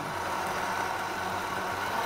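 Countertop blender running steadily, blending soaked cashews and water into cashew milk, not yet brought up to its high speed.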